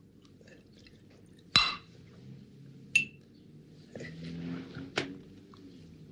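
Drinking glasses clinking and knocking: a loud knock about a second and a half in, a short ringing clink about three seconds in, and a sharp click about five seconds in.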